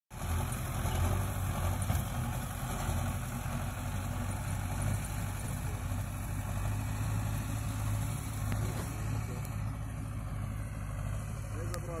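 A steady, even engine hum at constant speed, low in pitch; a voice starts right at the end.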